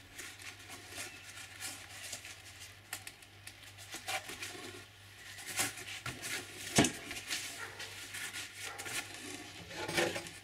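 Gloved hands pressing and rubbing a textured foam layer down onto a glued foam seat: faint scuffing and small clicks, with a sharper knock about seven seconds in and another near the end. A steady low hum runs underneath.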